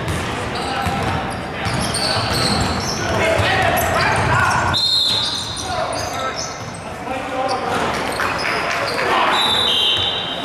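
Pickup basketball game in a gym: the ball bouncing on the hardwood, sneakers squeaking in short high squeals, and players' voices and calls, all echoing in the large hall.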